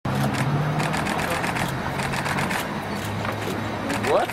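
Rapid, irregular clicking of several camera shutters firing in quick succession, over a steady low hum.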